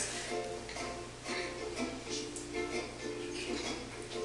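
Recorded song playing through a loudspeaker: short, repeated plucked-string notes over a light, ticking beat, with no vocal line.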